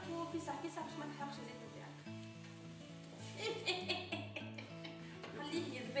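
Chopped onion sizzling in olive oil in a frying pan as it is stirred, over background music.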